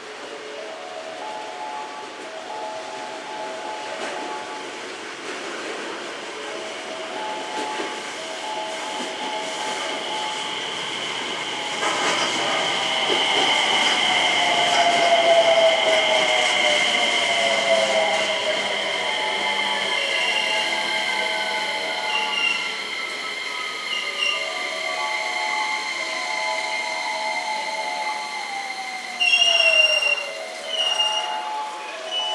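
JR West 321 series electric train pulling into the station and braking to a stop. The wheels run on the rails with a steady high squeal, and the whine of its traction motors slides down in pitch as it slows. A repeating pattern of short chime tones sounds throughout, and there is a brief louder burst near the end as the train comes to rest.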